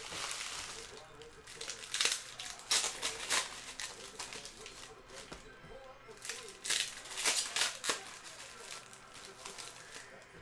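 Plastic hockey card pack wrappers crinkling and cards being handled, with sharp crackles and snaps scattered through, loudest about two to three and a half seconds in and again around seven seconds. The wrappers are thin and clingy, like plastic wrap, which makes them hard to tear open.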